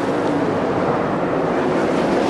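World of Outlaws 410 sprint cars running at speed on the dirt track, their V8 engines blending into one steady, dense engine noise.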